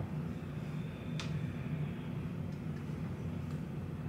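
Steady low hum of a small cabin room, with a single light click about a second in.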